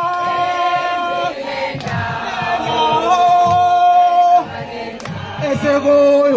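A group of voices singing a song together in long held notes that step from pitch to pitch, with a pulsing low beat underneath.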